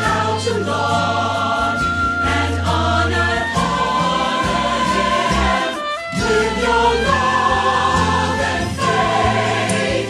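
Religious song: voices singing over instrumental accompaniment, in a choir sound. The sung lines are "you showed us how to laud and honor him" and then "with your love and faith, you conquered doubt and hate", with a brief break in the music just before the second line.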